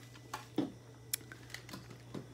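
A few faint, scattered clicks and taps of a clear plastic candy jar's lid being taken off and a hand reaching in among wrapped hard candies.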